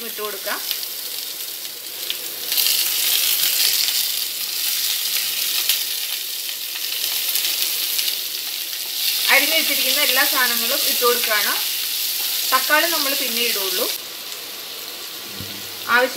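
Chopped onion, ginger, garlic, curry leaves and green chilli sizzling as they fry in hot oil in a non-stick kadai, stirred with a wooden spatula. The sizzle grows louder about two seconds in and eases off near the end.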